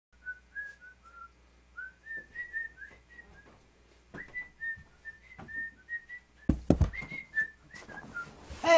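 A person whistling a tune in short, separate notes that step up and down in pitch. Near the end come a few heavy thumps as someone sits down in a leather office chair.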